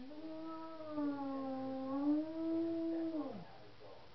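Cat yowling: one long, drawn-out call of about three seconds, its pitch dipping slightly, rising, then falling away at the end.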